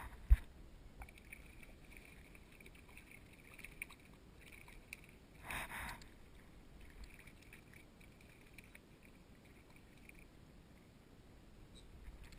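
Spinning fishing reel being cranked in short runs, a faint on-and-off whirr, while vertical jigging from a kayak. A single sharp knock comes just after the start, and a brief louder rush of noise about halfway through.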